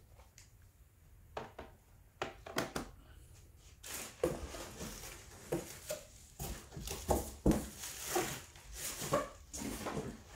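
Hard plastic comic-grading slabs knocking and scraping against one another as they are set down and shifted in stacks. A few separate knocks come first, then from about four seconds in a denser, irregular clatter with short squeaky rubs.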